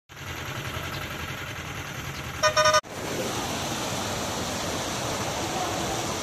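A steady low rumble of road noise with a short vehicle horn honk a little over two seconds in. After a sudden cut, a steady rush of floodwater pouring over a road.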